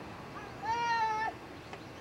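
A toddler's short, high-pitched vocal squeal, one steady held note lasting about half a second, starting a little over half a second in.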